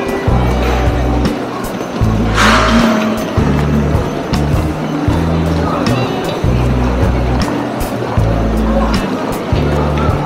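Music with a steady, stepping bass line, over the chatter and bustle of a crowded station concourse, with a brief hiss about two and a half seconds in.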